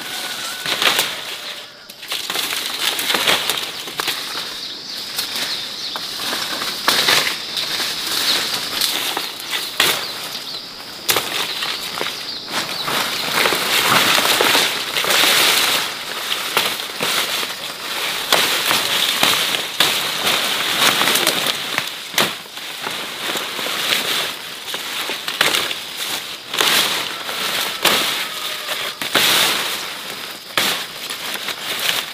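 Chit (broom grass) stalks and leaves rustling and crackling as they are handled and cut in a dense thicket, with frequent sharp snaps of stems.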